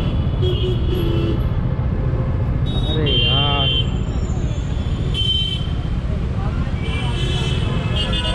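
Heavy city traffic heard from a slow-moving motorcycle: a steady engine and road rumble, with several short, high-pitched vehicle horn honks from surrounding traffic. A voice calls out about three seconds in.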